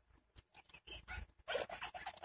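Mute swan cygnets calling in short, irregular peeps, with a cluster of calls about one and a half seconds in.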